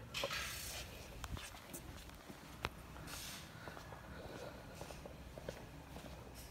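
Faint room tone with a few soft rustles and scattered light clicks, as of a handheld camera being moved.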